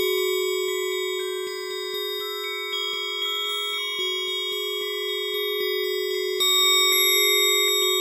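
Bell-like synthesizer sound played on an Akai MPK Mini keyboard: overlapping, sustained ringing notes over one held low tone, with a louder cluster of notes struck about six and a half seconds in.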